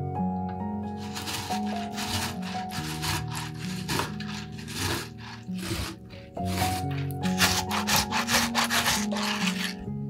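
Halved tomato rubbed against a metal box grater in quick repeated rasping strokes, grating the flesh onto a plate. The strokes come in two runs with a short pause in the middle, over background music.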